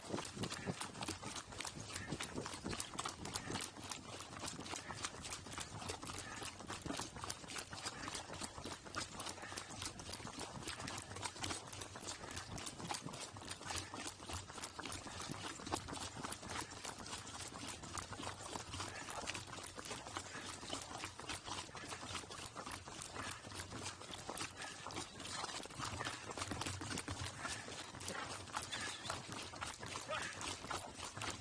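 Pack burros' hooves clopping on asphalt as they walk, a dense run of clicks that keeps on steadily.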